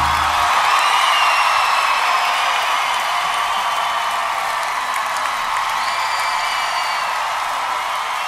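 A steady wash of hiss-like noise with a few faint high tones, slowly fading as the outro of a song in a pop/R&B chill playlist.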